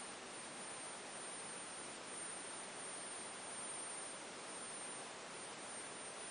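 Faint steady hiss with a thin, high-pitched steady whine: the ringing of a homemade joule ringer circuit, its CRT-yoke ferrite transformer oscillating as it drives a CFL bulb.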